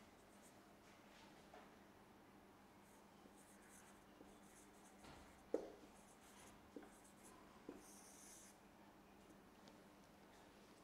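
Faint scratching and squeaking of a marker pen writing on a whiteboard in short strokes, with a few light knocks, the sharpest about halfway through.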